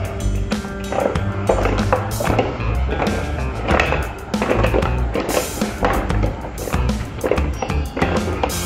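Background music over the rattle and clatter of mussels, shrimp, corn and potatoes being tossed in a stainless steel bowl.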